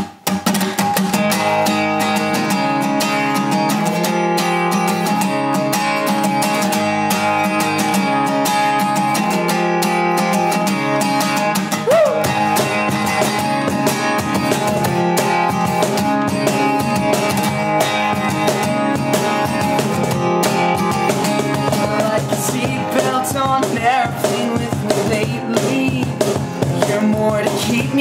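Band intro played on two strummed acoustic guitars with a steady cajon beat, starting about half a second in. A singing voice comes in over the guitars near the end.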